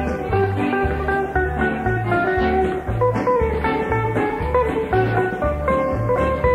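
Instrumental passage of an old-time country square dance tune between the caller's lines: a guitar-led band over a steady bass note that changes about twice a second.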